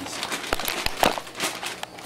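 Plastic bag of mini marshmallows crinkling as they are tipped into a saucepan, with irregular crackles and light clicks.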